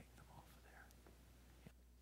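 Near silence: faint whispering in the first second, a couple of small clicks, and a steady low hum underneath.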